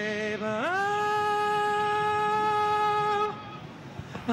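An untrained young man's voice singing: a lower phrase, then about half a second in a slide up to a high G-sharp held for nearly three seconds with shaky vibrato, ending abruptly a little after three seconds.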